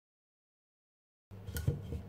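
Dead silence for over a second, then a low steady hum with a single short knock near the end.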